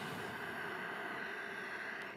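A slow, steady in-breath, heard as an even hiss of breath: the inhalation that leads into kumbhaka (breath retention) in pranayama.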